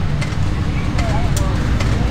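Engine of a lifted Cub Cadet garden tractor running at a steady idle: a continuous low rumble, with a few light clicks over it.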